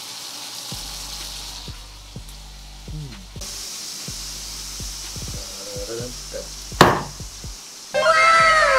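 Ribeye steak sizzling in butter and oil in a frying pan, a steady hiss with small level jumps, and one sharp knock near the end.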